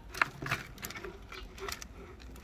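Hands working in coco peat inside a thin cut-down plastic bottle pot, lifting out a rooted cutting: irregular crackles and clicks of the plastic and the loose medium, the sharpest about a fifth of a second in.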